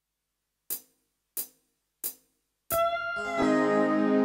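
Three short ticks evenly spaced about two-thirds of a second apart, a count-in, then arranger keyboards start the song's intro with held chords and a lead line that slides in pitch.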